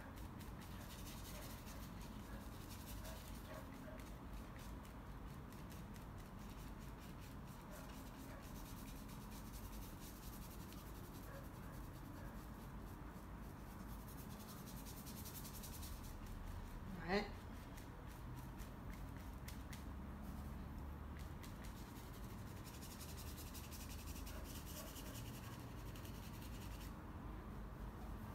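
Faint, intermittent rubbing and scratching of a paintbrush stroking acrylic paint onto paper. About 17 seconds in there is one short vocal sound.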